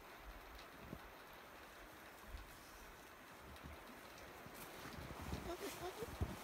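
Quiet outdoor ambience: a faint steady hiss with a couple of soft clicks, and faint voices coming in near the end.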